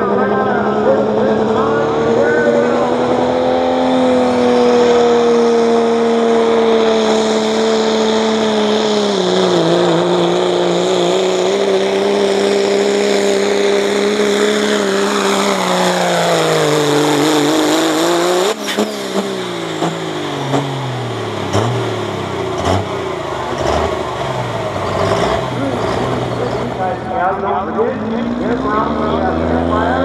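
Dodge Ram pulling truck's turbocharged Cummins diesel running at full throttle under the load of a pulling sled, a hard steady engine note with a high whistle over it, its pitch sagging lower as the sled bogs it down. About 18 seconds in the throttle comes off and the engine winds down, and near the end another diesel truck revs up.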